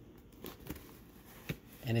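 Faint scraping of a vinyl record jacket sliding out of a cardboard mailer box, with two light taps about a second apart.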